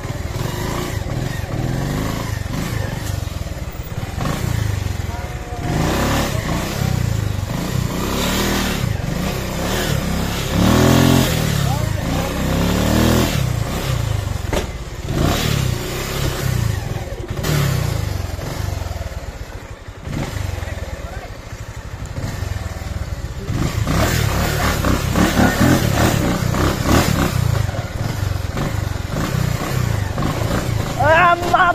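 Motorcycle engine running under throttle over a rough, rocky trail, its pitch rising and falling several times as the rider opens and closes the throttle.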